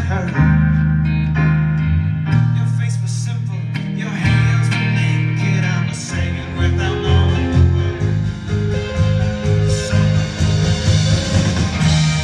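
Live band playing an instrumental passage of the song on electric guitars, bass, keyboard and drums. Held low notes give way about halfway through to a pulsing beat, about two a second.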